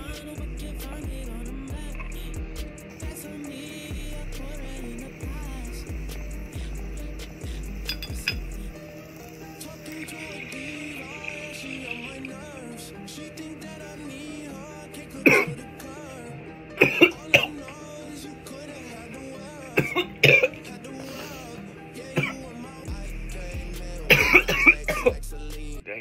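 A person coughing hard in short fits, the coughs coming in clusters through the second half and thickest near the end. Likely a reaction to inhaling smoke from the pipe. Throughout, background music plays with a steady bass beat.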